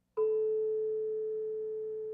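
A tuning fork with small weights fixed near the tips of its prongs is struck once, just after the start, and rings one steady pure tone that slowly fades. The weights set its note ever so slightly apart from an otherwise identical unweighted fork.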